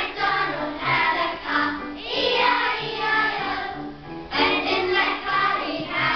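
A group of children singing an action song together, over a steady piano accompaniment.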